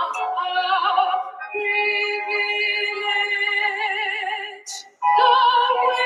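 A recorded song: a singer holds long notes with vibrato over a musical backing, with a short break about five seconds in.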